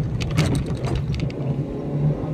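Inside a moving car: steady engine hum and road noise, with a few brief ticks in the first second or so.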